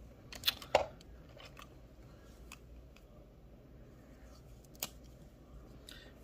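Plastic marker caps and markers clicking as they are handled on a desk: three sharp clicks within the first second, then single clicks about two and a half and about five seconds in.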